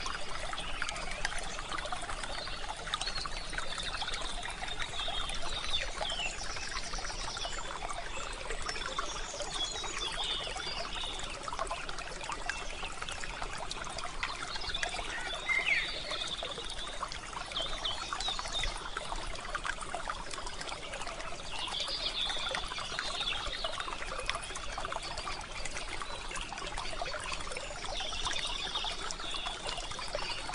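Steady trickling of a stream, with occasional short bird chirps over it.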